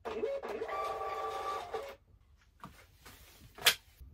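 Munbyn 4x6 thermal label printer running for about two seconds with a steady whine as it feeds out a shipping label, then stopping. A single sharp click follows near the end.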